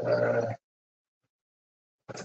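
A man's voice holding a drawn-out vowel, like a hesitant "uhh", for about half a second, then dead silence.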